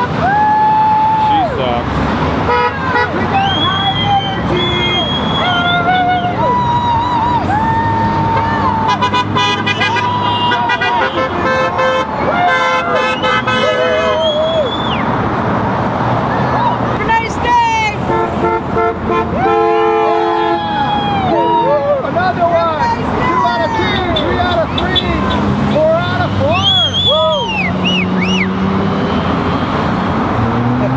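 Passing cars honking their horns again and again, in short and long blasts of different pitches, over steady traffic noise. People on the corner whoop and cheer between the honks.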